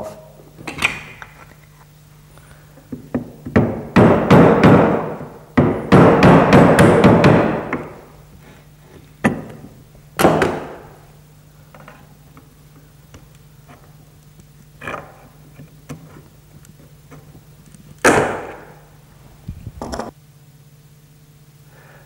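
Wooden mallet tapping a screwdriver in behind a corner block to prise it off a maple dining chair frame. Two quick runs of knocks come about four and six seconds in, followed by scattered single knocks.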